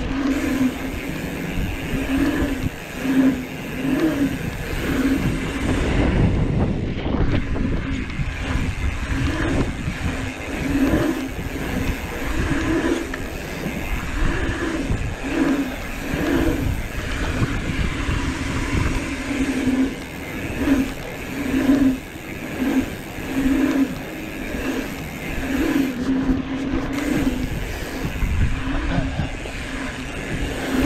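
Mountain bike rolling over the humps of a paved pump track: wind rumble on the camera and the hum of knobby tyres on asphalt. The hum swells and fades about once a second as the bike rises and drops over each roller.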